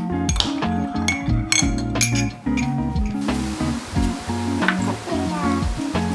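A metal spoon clinking against a white ceramic mug as a drink is stirred: repeated light clinks over the first three seconds, heard over background music with a steady beat.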